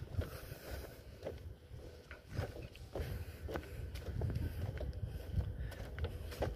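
Footsteps on a wooden boardwalk: a series of irregular soft knocks over a steady low rumble.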